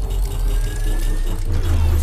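Intro sting of an animated title card: a deep bass rumble with sweeping whooshes and a faint rising tone, growing louder near the end.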